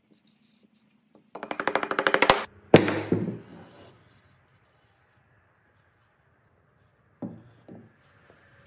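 Two halves of a wooden cross lap joint pushed together: about a second of rapid, stuttering chatter of wood rubbing on wood, then one loud wooden knock as the joint seats. Two lighter wooden knocks near the end.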